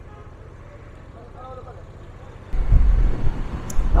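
Honda Transalp 650's V-twin engine running at low speed, a low even pulsing. About two and a half seconds in, the sound cuts abruptly to loud wind buffeting on the microphone over the engine at riding speed.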